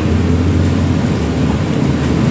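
Steady low rumble of a London bus's engine and road noise, heard from inside the passenger cabin as the bus drives along.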